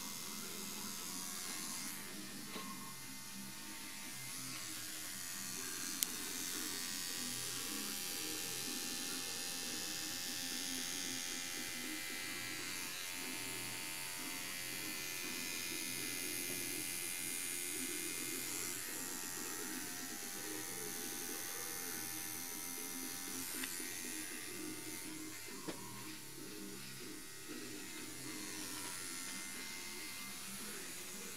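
Electric tattoo machine buzzing steadily while tattooing skin, with a couple of brief sharp clicks.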